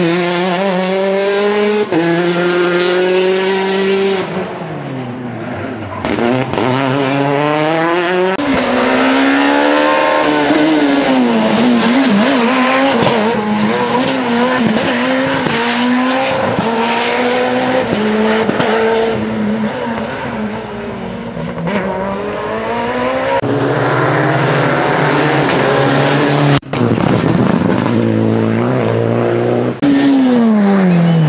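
Rally cars on a tarmac stage, among them a Citroën DS3 and a Peugeot 207, passing one after another at full attack: loud engines revving hard, pitch climbing through the gears and dropping sharply on braking and downshifts.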